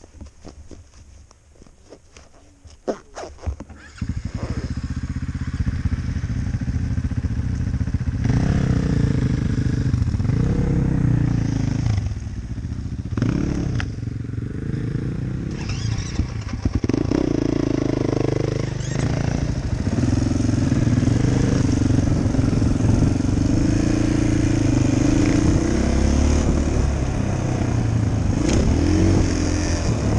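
A few light clicks, then about four seconds in a dirt bike's engine starts and keeps running, its revs rising and falling as the bike pulls away and is ridden along the trail.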